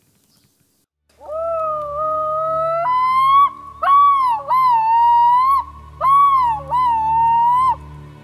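Yellow-billed loon (white-billed diver) calling: starting a little over a second in, a long drawn-out wail that breaks into repeated rising-and-falling phrases, the loon's yodel.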